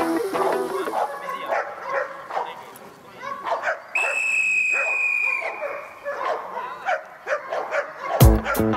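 Belgian Malinois barking and yipping in short irregular bursts, with a steady high tone held for about a second and a half around the middle. Background music fades out at the start and comes back at the end.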